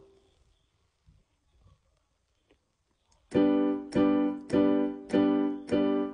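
Electronic keyboard with a piano sound. After about three seconds of near silence, a full G major chord, played in both hands, is struck repeatedly at a steady pulse of roughly one strike every 0.6 s, each strike decaying before the next.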